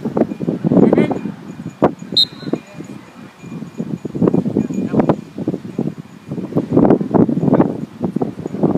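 Wind buffeting a phone microphone in irregular gusts on an open football pitch, with faint shouts from players. A brief high chirp sounds about two seconds in.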